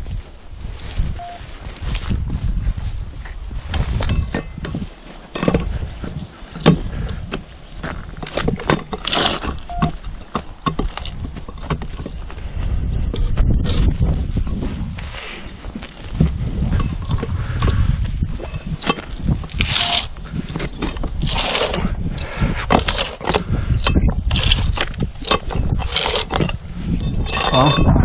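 A heavy concrete-filled lid in a steel frame is dragged and levered with a pickaxe across a concrete well rim: irregular scraping and knocks, with low rumbling handling noise.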